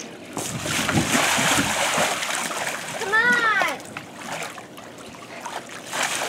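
Pool water splashing and sloshing around a clear inflatable water-walking ball as the child inside crawls across it, strongest over the first three seconds. A short shout rises and falls a little past the middle.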